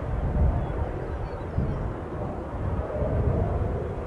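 Steady low rumble on a distant outdoor recording at the Starship SN4 test stand, with no sharp bang.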